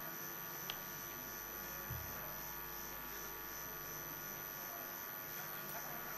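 Steady electrical hum over quiet room tone, with a faint click just under a second in and a soft low thump about two seconds in.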